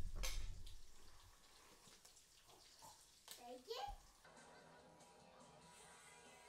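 A low rumble fades out in the first second, then a young child's brief high vocal sounds come around three seconds in. Soft sustained background music with held tones starts about four seconds in.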